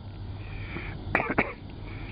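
A man coughs: a quick cluster of two or three short coughs about a second in, over a faint, steady low hum.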